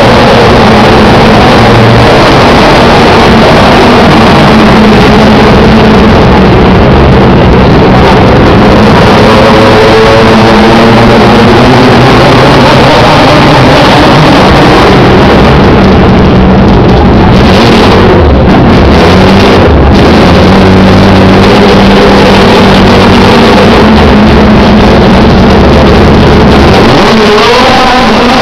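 TC2000 touring-car engines running hard on the circuit, a continuous loud engine noise with pitch sweeps as cars pass, loud enough to saturate the recording.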